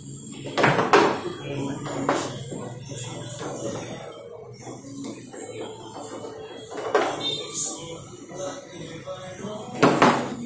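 Foosball game in play: sharp clacks of the ball being struck by the rod players and knocking against the table, a cluster about a second in, another near two seconds, one near seven seconds and a loud one near the end, over a background murmur.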